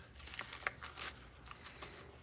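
Faint rustling and a few small clicks as a shoulder sling's strap and pad are handled and flipped over in the hands.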